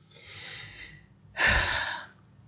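A woman breathes in softly, then lets out a louder breath about one and a half seconds in.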